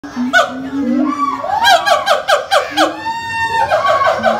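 Siamang gibbons calling very loudly: a rapid series of short falling whoops at two pitches, about five a second, broken by longer rising-and-falling swoops.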